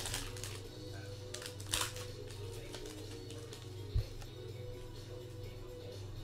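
Quiet background music, with the crinkling and clicking of a trading-card pack wrapper being cut open in the first two seconds, and a single soft thump about four seconds in.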